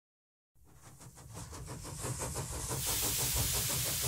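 Steam engine exhaust beats, rapid and even, fading in from silence and growing steadily louder, with a hiss of steam joining about three seconds in.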